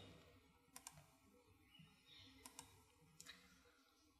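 Near silence broken by a few faint computer mouse clicks, some in quick pairs.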